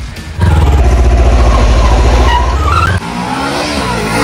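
Kawasaki sport motorcycle engine accelerating hard, starting suddenly with a loud, deep, even note. About three seconds in it drops back and climbs again in pitch.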